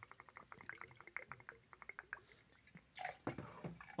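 Pisco pouring from its bottle into a metal jigger: a faint, rapid run of small glugging ticks that stops about three seconds in.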